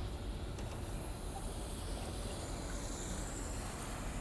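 Steady outdoor background noise, a low rumble with an even hiss over it, with no distinct events.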